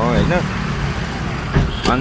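Motorcycle engine idling steadily with a low, even hum. Two short knocks come near the end.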